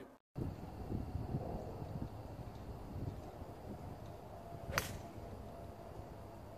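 A golf club striking the ball on a tee shot: one sharp crack with a short ring, nearly five seconds in. Wind rumbles on the microphone throughout.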